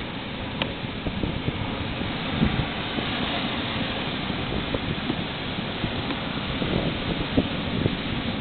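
Steady wind noise on the microphone, with a few faint knocks.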